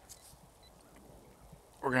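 Near silence with only faint background, then a man starts speaking near the end.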